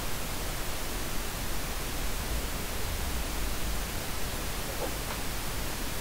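Steady hiss of the microphone's background noise, unchanging throughout.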